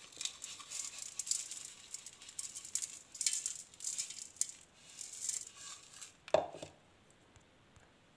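Coarsely ground spice seeds pouring from a glass bowl onto cut carrots and lemons in a steel bowl: a dry, hissing rattle that comes in uneven waves. A single short knock about six seconds in.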